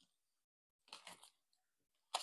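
Near silence, with one faint, brief crackle about a second in as the protective film starts to be lifted off the corner of a clear plastic sheet.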